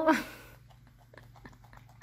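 A baby macaque eating cauliflower florets at a wooden table: faint, irregular small clicks of chewing and picking at the pieces.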